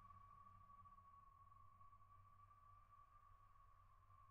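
Near silence, with only a faint steady high tone and a low hum.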